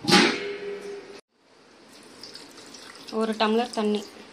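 Water poured into a metal pressure cooker, loud at first with a steady ringing tone, then cut off abruptly about a second in, after which a quieter pour continues. A voice speaks briefly near the end.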